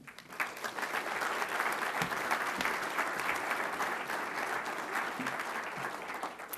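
Audience applauding, a dense patter of many hands clapping that begins right after a speech ends and thins slightly near the end.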